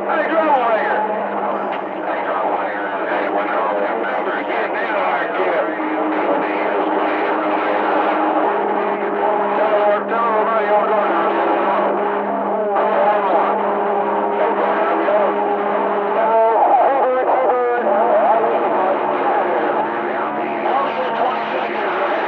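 CB radio receiver audio from a busy channel: several garbled, overlapping transmissions, thin and cut off in the highs like a radio speaker. Steady low whistling tones lie under them and break off for a moment about two-thirds of the way through.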